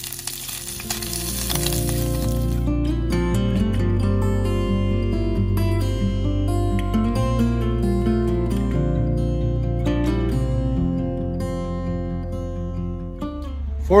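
Sliced wieners sizzling in a small cast-iron skillet for the first couple of seconds, the sizzle stopping about three seconds in. Background music with a steady bass, fading in about a second in, carries the rest and is the louder sound.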